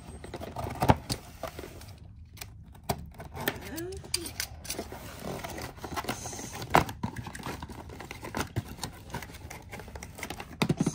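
A plastic toy bus handled in its cardboard packaging: scattered clicks, taps and knocks of plastic and cardboard.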